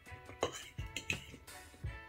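Background music with sustained, plucked-sounding tones, and a few light clicks of a metal spoon and fork against a ceramic plate.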